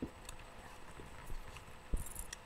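Handling noise: a few dull low thumps and faint clicks as a drink can is moved about close to the microphone, the loudest thump just before the end.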